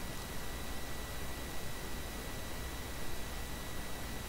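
Steady background hiss with a faint high-pitched whine and a low hum, the noise floor of a desktop recording setup, with no distinct sound event.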